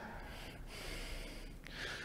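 Quiet pause filled by a man's breathing at a close microphone, with a breath drawn in near the end before he speaks again.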